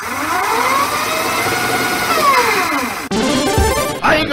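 Electronic intro sting: several pitched tones swoop up together and glide back down over about three seconds, then switch abruptly to a harsh buzz near the end.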